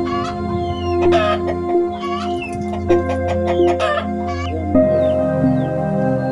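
Domestic chickens clucking and calling several times over a steady background music track.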